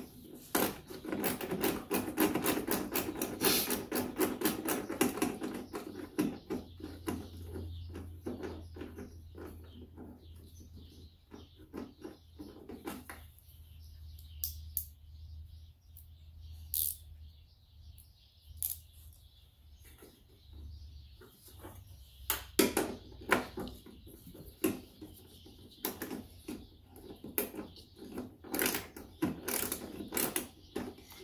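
Hand ratchet wrench clicking in quick runs as a socket turns a bolt, with the clicking thick for the first few seconds, thinning out in the middle, and coming back in short runs near the end.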